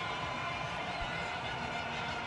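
Stadium crowd noise: a steady din from the stands celebrating a boundary four.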